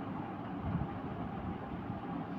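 Steady low-level background noise, a dull rumble with a little hiss, with no distinct event in it.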